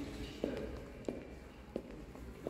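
Footsteps on a hard tiled floor: three short, sharp steps evenly spaced about two-thirds of a second apart.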